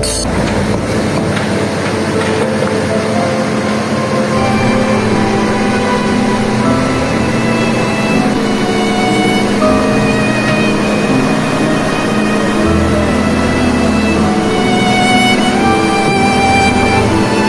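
Background music, laid over the diesel engine of a Hitachi Zaxis 200 crawler excavator running as it drives onto a flatbed truck. A deep rumble comes through at the start and again near the end.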